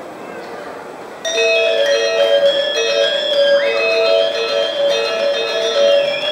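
Balinese gamelan ensemble starting to play about a second in, its metallophones ringing in quick repeated notes over a low crowd murmur.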